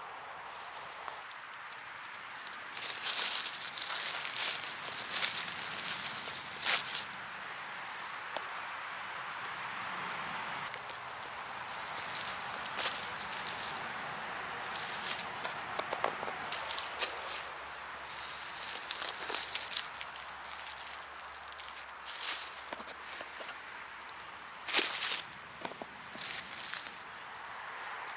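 Dry leaf litter and twigs on a forest floor rustling and crackling under footsteps and handling, in irregular bursts separated by quieter stretches.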